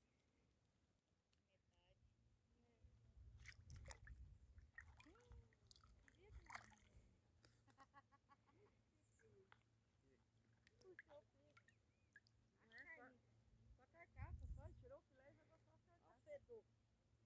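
Near silence, with faint, distant voices coming and going and a couple of low rumbles.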